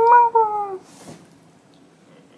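A woman's high-pitched, closed-mouth hum, sliding slightly downward in two parts, followed about a second in by a short puff of breath as she blows on a spoonful of hot ramen broth and egg.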